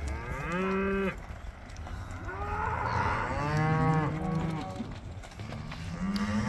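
Cattle mooing: a short moo about a second long at the start, then a longer moo from about two seconds in that rises and falls in pitch.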